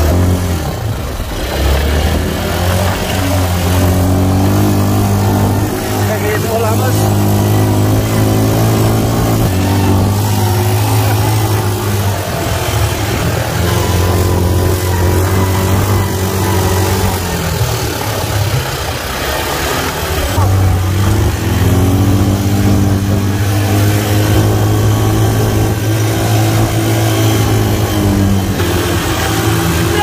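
Quad bike (ATV) engine running under way on sand, holding steady revs with its note stepping up and down; it drops away about 18 seconds in and picks up again a couple of seconds later.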